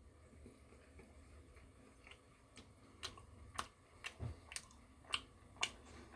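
Faint, irregular small clicks and ticks over quiet room tone. They begin about halfway through, with one soft low thump among them.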